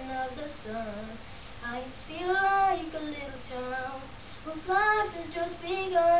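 A boy singing alone without accompaniment: several phrases with long held notes that bend up and down in pitch.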